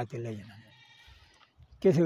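A faint bleat, about a second long, from an animal such as a sheep, heard in a brief pause between a man's sentences.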